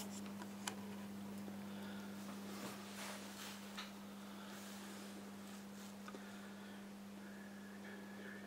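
Steady low electrical hum with a few faint clicks and a soft rustle as the capacitance dial of a valve capacitance bridge is turned by hand.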